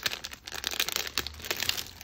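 Clear plastic packaging bag crinkling as fingers handle it, a quick run of small crackles.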